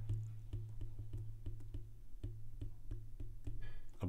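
A stylus tip tapping and scratching on a tablet's glass screen as a word is handwritten: a quick, irregular run of light clicks, about four or five a second, over a steady low hum.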